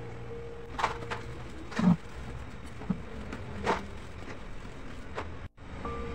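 A few short, sharp knocks and taps, about five of them spread out, the loudest near two seconds in, over low background hiss.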